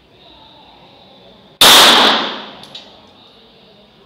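A single pistol shot, very loud, with an echoing tail that fades within about a second. Two faint clicks follow about a second later.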